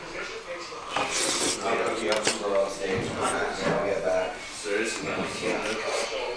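Indistinct voices talking in the background, with a short clatter about a second in.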